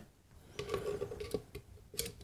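Faint metal scraping and light clicks as a screwdriver works at the tacho coil housing of a washing machine motor, with a sharper click at the end.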